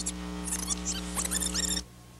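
Steady electrical hum of an old tape recording with short, high squeaky chirps over it. Both cut off abruptly near the end, leaving faint hiss.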